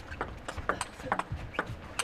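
Table tennis rally: the plastic ball struck back and forth by rubber-faced bats and bouncing on the table, a quick irregular string of about eight sharp clicks.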